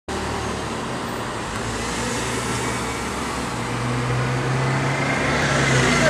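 Street traffic: motor vehicles passing and running through an intersection, with a low, steady engine hum that grows louder over the second half.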